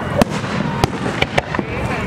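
Aerial fireworks bursting: four sharp cracks, the loudest about a quarter second in, then three more in quick succession in the second second.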